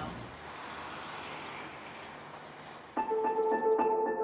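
Steady noise of trucks at a truck stop that slowly fades, then background music with held notes comes in about three seconds in.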